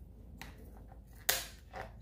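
Kitchen scissors cutting along the back of a spiny lobster tail's shell: a few faint snips, then one sharp, loud click a little over a second in.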